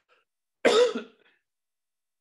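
A man coughs once, a short, harsh burst about two-thirds of a second in.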